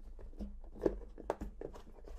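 Lid of a rigid cardboard box being pulled up off its base by hand: faint rubbing of board on board with a few small clicks and taps of handling.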